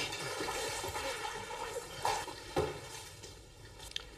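A heavy, wet cowhide being dragged out of a lime pit of water and hydrated lime, the liquid running and dripping off it, with a couple of soft splashes about halfway through.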